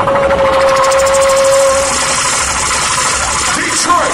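Loud live hip hop sound from a concert PA system, heavily distorted, with a held tone for about the first two seconds over a rapid buzzing pulse.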